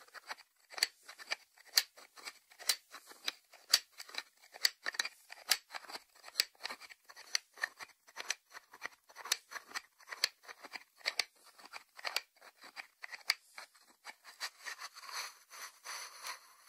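Fingers tapping the lid of a small white ceramic salt dish: quick, irregular, sharp clicks several times a second. Near the end the clicks thin out into a softer rubbing sound.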